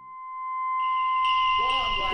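A steady, high-pitched electronic sine tone fading in and growing louder, joined by a second, higher tone a little under a second in; wavering, arching sounds rise beneath it near the end.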